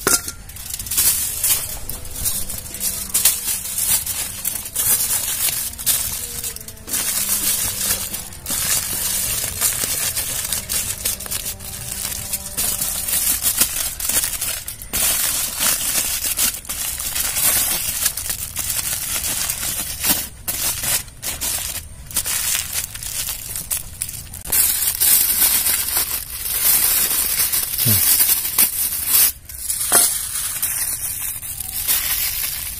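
Aluminium foil crinkling and crumpling in irregular bursts as it is folded and pressed by hand around a leaf-wrapped parcel.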